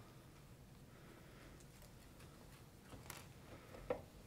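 Near silence with room hiss, broken near the end by a few faint light clicks as thin copper wire is twisted and handled by hand.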